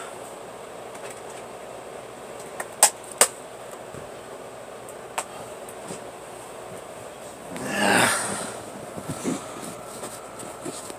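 Faint steady room noise with a few sharp clicks a few seconds in, then a louder rustling whoosh about eight seconds in as the handheld camera is moved.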